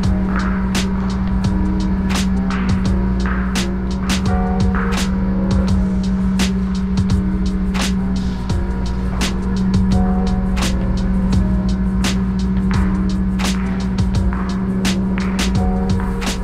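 Background music: a beat-driven track with regular percussion hits over a steady, held bass note.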